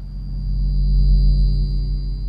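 Ominous sustained low drone of a horror film score, swelling to a peak about a second in and then easing, with a steady high ringing tone held above it.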